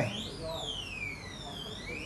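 A siren-like alarm wailing in a repeating cycle: each cycle rises quickly in pitch and then falls slowly, about every two seconds.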